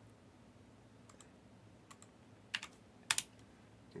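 A few scattered computer keyboard keystrokes: sharp single clicks spread about a second apart, the loudest near the end, over a faint low hum.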